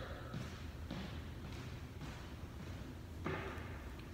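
Quiet tone of a large hall with a steady low hum, broken by a few faint soft taps and thuds.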